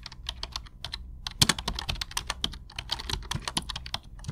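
Keyboard typing: rapid, irregular clicks, several a second, with a brief pause about a second in.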